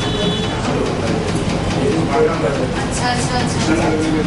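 Indistinct, overlapping talk from several people around a meeting table, over a steady low rumble.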